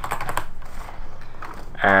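Computer keyboard typing: a quick run of keystrokes at the start, then sparser key presses.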